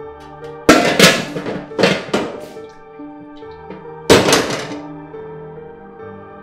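Several loud, sharp thuds over soft background music: a quick run of hits in the first two and a half seconds, then one more heavy thud about four seconds in.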